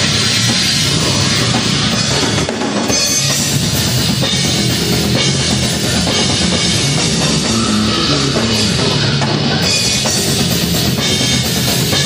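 Heavy metal band playing live: a drum kit and electric bass, loud and dense, with a brief dip about two and a half seconds in.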